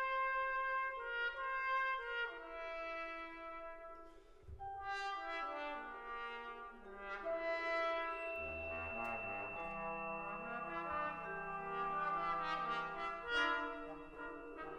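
Full brass band playing slow, sustained chords, with notes changing step by step. The texture thins to a quiet dip about four seconds in, then more parts enter and low bass notes join from about eight seconds in as the sound fills out.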